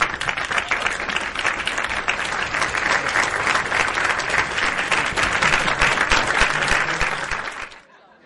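An audience applauding, a dense, even clatter of many hands clapping that stops abruptly shortly before the end.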